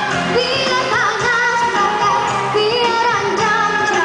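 A young girl singing a pop-style song into a microphone over accompanying music.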